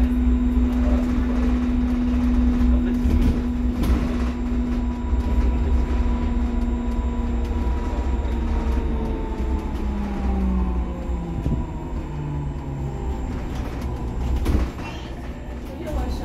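Cabin of an SOR NS 12 electric bus under way: the electric drive's steady whine over low road rumble, its pitch stepping down from about halfway through as the bus slows. A single knock near the end, after which the rumble drops.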